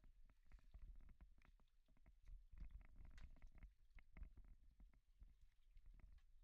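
Faint knocks and clicks of a kayak and its paddle working through a low stone tunnel, with water moving underneath, over a low rumble.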